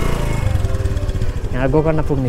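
Motor scooter engine running with a steady low pulse while the scooter is ridden; a voice speaks briefly near the end.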